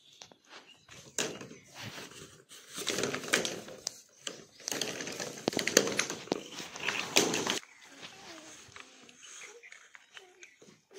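Long black plastic pipes being handled: irregular knocks, clatter and scraping as they are shifted against each other and over the ground. The handling noise stops about two thirds of the way through and leaves only faint background sound.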